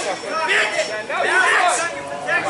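Speech only: several people talking over one another in the street.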